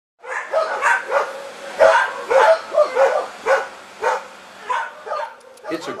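A dog barking repeatedly, about a dozen short barks at uneven intervals over five seconds.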